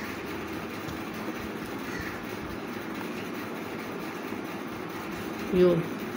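Steady background hum and hiss with no distinct events, and a short spoken syllable near the end.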